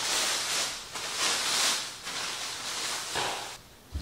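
Thin plastic sheeting rustling and crinkling in several swells as it is pulled and wrapped around furniture. A short low thump comes right at the end.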